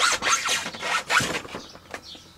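Several quick scraping, rubbing strokes during the first second and a half, a hard surface being brushed or dragged during handling.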